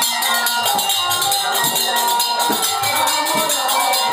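Kirtan music: small brass hand cymbals (kartal) clashing in a fast, steady rhythm over a held melody line and low drum strokes.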